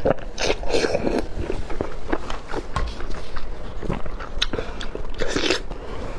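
Close-miked eating: wet biting and chewing of soft skewered food soaked in chili oil, with many small mouth clicks and two longer sucking slurps, one near the start and one about five seconds in.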